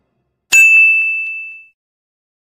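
A single bell-like ding sound effect. It strikes sharply about half a second in, and one clear high tone rings and fades away over about a second.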